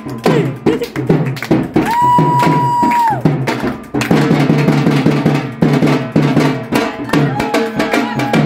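Dhol drums played fast and loud in a steady, driving rhythm, with a single high note held for about a second, about two seconds in.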